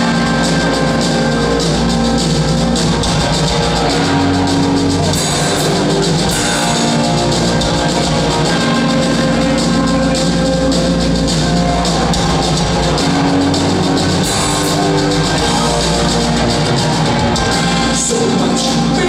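A punk rock band playing live in an instrumental passage with no vocals: electric guitars and bass over a drum kit, loud and steady throughout.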